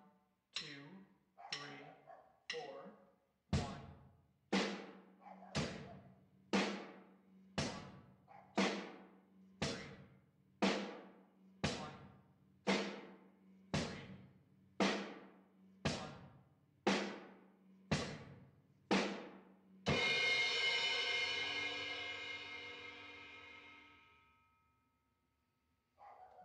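Drum kit playing the most basic rock beat slowly, about one stroke a second: hi-hat on every beat, with bass drum on one and three and snare on two and four. About twenty seconds in, a cymbal crash ends the beat and rings out, fading over several seconds.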